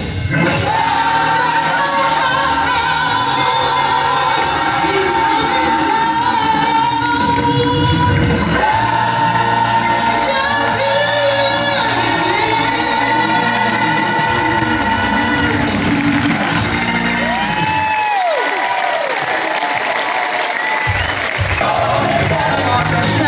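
Church choir singing with keyboard and band accompaniment, holding long sustained chords. Near the end the low accompaniment drops out for a few seconds, leaving the voices singing high wavering notes.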